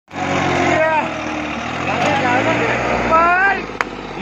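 Massey Ferguson tractor's diesel engine running steadily, with its rear wheel dug into loose sandy soil as it is stuck; people's voices are loud over the engine.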